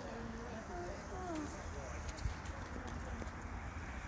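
Onlookers' voices talking quietly over a steady low rumble, with a few faint clicks about halfway through.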